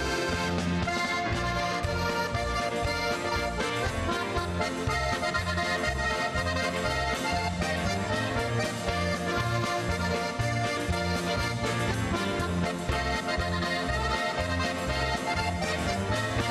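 Button box accordion playing a dance tune over a steady alternating bass line.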